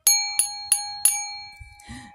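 Singing bowl struck four times in quick succession, about a third of a second apart. It rings with a clear, steady metallic tone that fades away over the second half.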